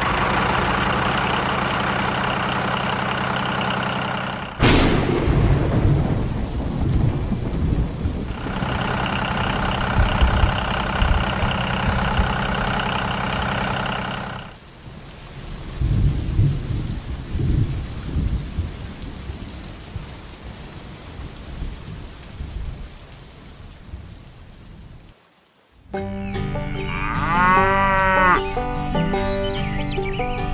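Thunderstorm sound effects: a thunderclap about four and a half seconds in, then low rolling thunder with steady rain, with a steady droning tone in places. Near the end, upbeat music starts.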